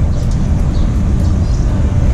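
Steady, loud low engine rumble of a canal passenger boat approaching.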